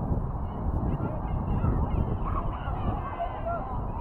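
Wind buffeting the microphone with a steady low rumble. Short, faint, distant calls with sliding pitch are scattered over it.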